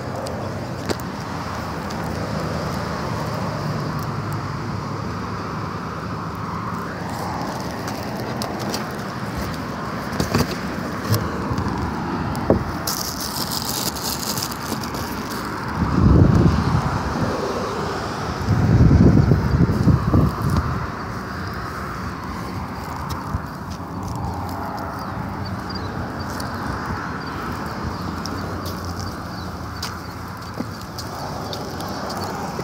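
Roadside outdoor ambience: a steady wash of traffic noise from a nearby road, with scattered light clicks. Two louder low rumbles come about halfway through, the first as a car passes close by.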